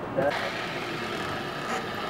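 Steady background noise of a fast-food restaurant kitchen: an even hum of equipment and ventilation, with a brief bit of voice at the very start.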